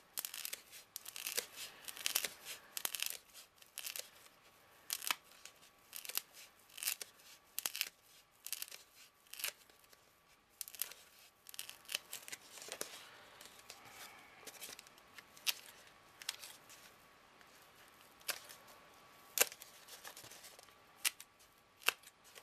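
Scissors snipping through a packing-foam ring, trimming a thin sliver off its edge: a long run of short, irregular cuts.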